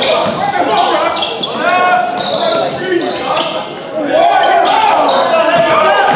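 Basketball game sounds in a large gym: the ball bouncing on a hardwood court, with voices of players and spectators calling out over the play.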